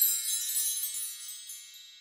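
High, shimmering chimes ringing out and fading away.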